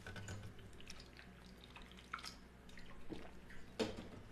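A man taking a drink close to a microphone: faint swallowing and small wet liquid clicks, with a brief louder sound near the end.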